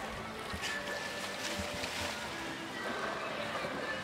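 Pool water sloshing and splashing as orcas move at the surface by the poolside, under a murmur of spectators' voices and faint background music.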